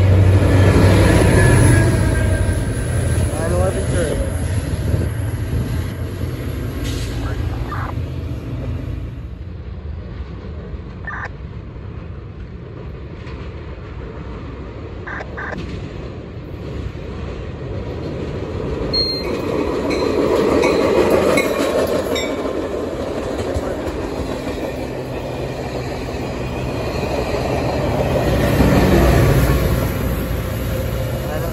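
Caltrain diesel commuter trains. A departing train's locomotive rumbles away and fades over the first several seconds. Then an approaching train led by an EMD F40PH locomotive grows louder through the second half, its engine and its wheels on the rails running loudest as it passes close near the end.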